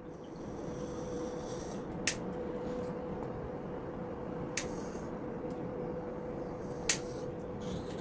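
Three sharp clicks of a pet nail clipper cutting a small dog's toenails, spaced about two and a half seconds apart, over a steady faint hum.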